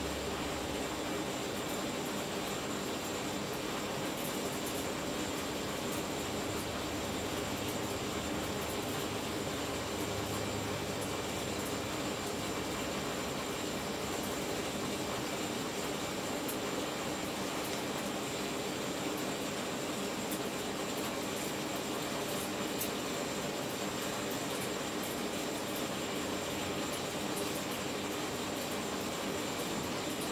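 High-voltage arcs from two stacked microwave oven transformers crawling across an LG plasma display panel. They make a steady crackling hiss over a low transformer hum.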